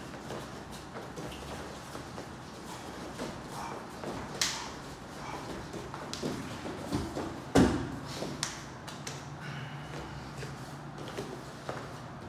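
Bare feet shuffling and slapping on a foam training mat, with a sharp slap a little before halfway and one heavy thud about two-thirds through as two bodies fall together onto the mat in a jumping scissor takedown.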